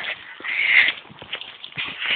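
A train rolling past, with irregular clicks and a rushing noise that swells about half a second in.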